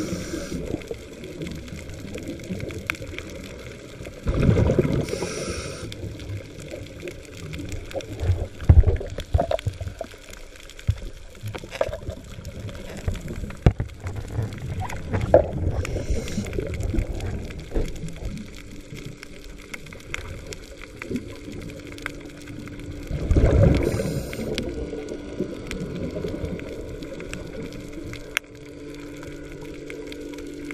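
Muffled underwater noise heard through a submerged camera: a constant low rumble of water, with two louder rushing, bubbling bursts and scattered sharp clicks and knocks. A faint steady hum comes in about two-thirds of the way through.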